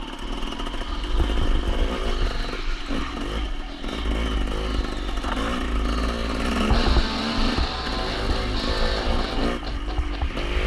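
Dirt bike engine under way, revving up and down with the throttle, its pitch rising and falling.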